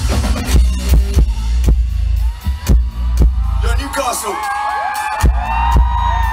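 Rock band playing live through a festival PA, with heavy bass and regular kick and snare hits. From about halfway through, the crowd whoops and cheers over the music.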